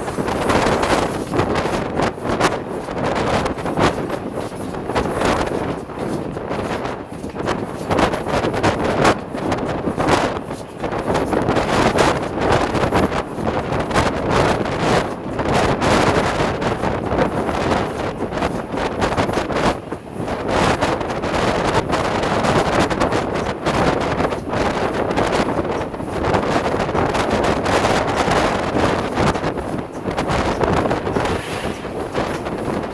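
Wind buffeting the microphone over the running of LNER A4 three-cylinder steam locomotive 60009 'Union of South Africa' at speed; the loudness rises and falls unevenly throughout.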